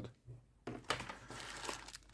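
A clear plastic bag of small fasteners crinkling as it is handled, starting about two-thirds of a second in and running on irregularly.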